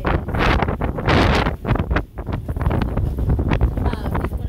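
Wind buffeting an outdoor microphone: a loud, gusty rumble that surges and eases several times.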